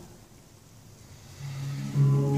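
A short quiet pause, then a handpan begins to play about a second and a half in: one low note rises and is soon joined by higher ringing notes.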